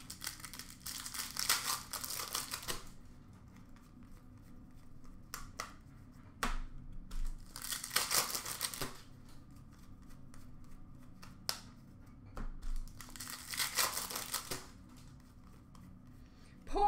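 Hockey card pack wrappers crinkling and tearing as packs are opened by hand, in three bursts of rustling: about a second in, in the middle, and near the end, with a few light clicks of cards being handled between them.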